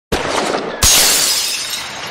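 Shattering sound effect: a first crash, then a louder glassy smash just under a second in that dies away gradually.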